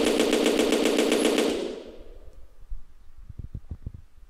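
Stock machine-gun sound effect: one rapid burst of automatic fire that stops about one and a half seconds in, its echo dying away over the next half second. A few soft clicks follow near the end.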